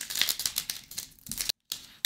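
Plastic wrapper of a Topps baseball card pack crinkling and tearing as it is ripped open by hand, a run of quick, irregular crackles.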